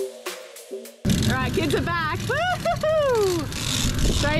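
Background music with a steady beat for about a second, then a sudden cut to a loud, steady rushing noise. Over it, a person's voice calls out in long drawn tones, the last one falling in pitch.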